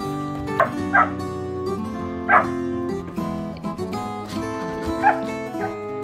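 Seven-week-old Border collie puppies yipping: several short high yips, the loudest a little over two seconds in, over background acoustic guitar music.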